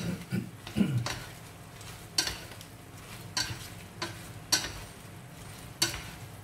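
Whole freshwater prawns sizzling in a stainless steel frying pan as they are stir-fried with wooden chopsticks. Five sharp clicks of the chopsticks against the pan and prawns come about once a second over the steady sizzle.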